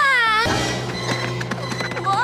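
A cartoon character's drawn-out vocal cry, falling in pitch, in the first half second, then background music with held notes.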